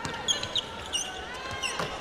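Basketball dribbled on a hardwood court, with a few short high-pitched sneaker squeaks over the low murmur of the arena crowd.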